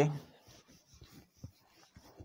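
Marker pen writing on a whiteboard: a few faint, short strokes.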